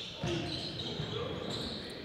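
Basketball scrimmage in a gym, fairly quiet: faint players' voices and court noise.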